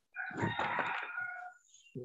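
A rooster crowing once, a held call of about a second and a half that fades near the end, heard over a video call.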